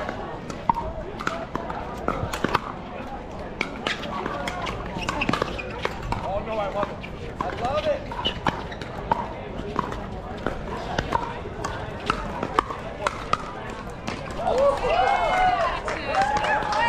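Pickleball doubles rally: paddles striking a hard plastic ball in an irregular run of sharp pops. Voices and chatter from around the court run underneath and grow louder near the end.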